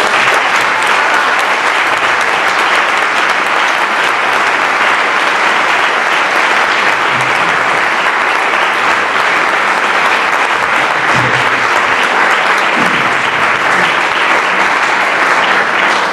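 Audience applauding: sustained, steady clapping from a roomful of people.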